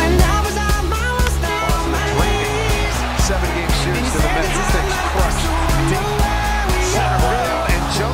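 Background music with a heavy bass and a steady beat, carrying a stepping melody line.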